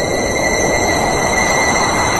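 Dramatic screeching sound effect laid over the picture: a steady, loud, noisy rush with a sustained high whistle-like tone, the middle range swelling toward the end.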